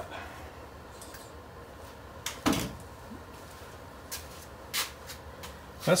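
A few short clicks and knocks of equipment being handled over a low steady hum, as a 300-watt bulb load is connected to the inverter. The loudest knock comes about two and a half seconds in, with lighter clicks later.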